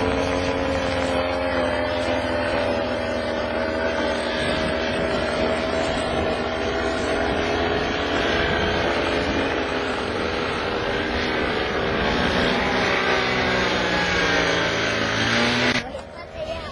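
Paramotor engine running steadily close to the microphone, its pitch drifting slightly, with wind noise underneath. The sound cuts off abruptly near the end.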